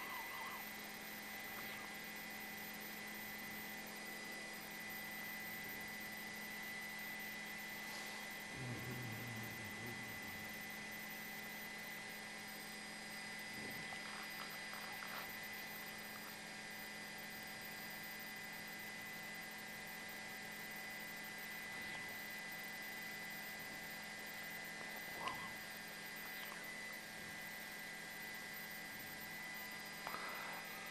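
Faint steady electrical hum, with a few faint brief noises here and there.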